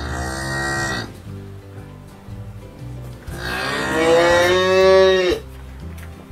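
Jersey cow mooing twice: a short moo that falls in pitch, then a couple of seconds later a longer, louder moo that rises and drops off at the end.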